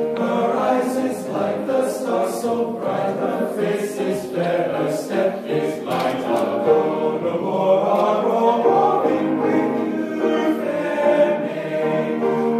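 High school men's choir singing in several parts, the voices moving together through changing chords without a break.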